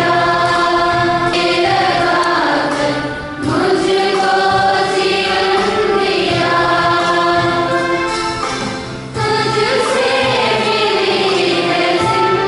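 A congregation singing a hymn together in long held notes, with two brief pauses between phrases, about three seconds and nine seconds in.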